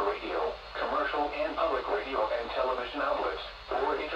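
Speech only: a radio-style alert voice reading a tornado watch statement, telling listeners to stay tuned to NOAA Weather Radio and other news sources for the latest severe weather information.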